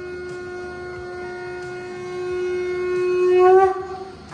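Conch shell (shankh) blown in one long steady note that grows louder in the last second and breaks off just before the end.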